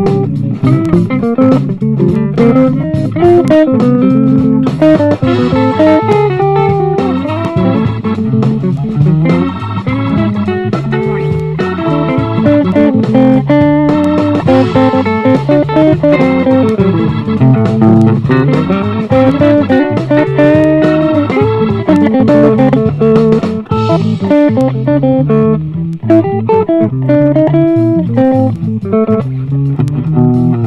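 Stratocaster-style electric guitar with single-coil pickups, improvising funk: a busy run of picked single notes and short chord stabs, played without a break.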